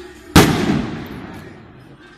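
A single loud bang from a signal rocket (cohete) bursting overhead, dying away over about a second. At an encierro such a rocket is the customary signal for the start of the run, when the bulls are let out.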